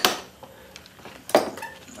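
Metal taps on a screwdriver wedged against a valve spring in a Briggs & Stratton side-valve engine's valve chamber, driving the valve down to free its retaining pin. The last of a quick run of taps comes right at the start, then a single sharp metallic clink about a second and a half in.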